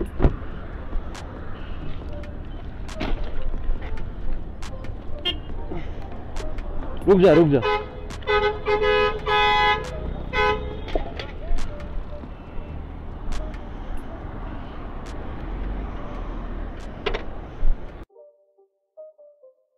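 A vehicle horn honking in a few short blasts over about two seconds, starting about eight seconds in, over steady road traffic rumble with scattered knocks and clicks.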